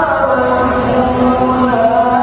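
A man reciting the Quran in the melodic, sung competition style (qira'at sab'ah), holding one long drawn-out note that bends in pitch near the end.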